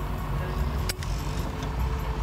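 Low steady rumble of a 1967–68 Ford Mustang convertible's engine idling, with a single sharp click about a second in.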